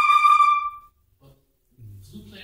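Concert flute ending an ascending scale on a high held note with a breathy attack; the note cuts off just under a second in.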